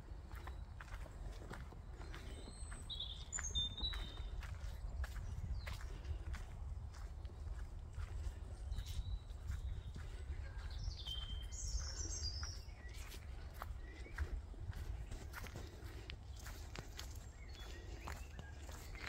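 Footsteps on a woodland dirt path, with a few short bird chirps scattered through, over a steady low rumble on the microphone.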